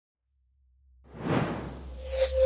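Whoosh sound effect of an intro sting, swelling up out of silence about a second in over a low hum.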